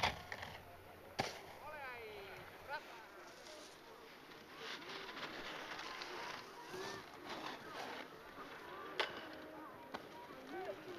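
A snowboard scraping and hissing over snow, with faint distant voices calling out now and then. Two sharp knocks stand out, about a second in and near the end.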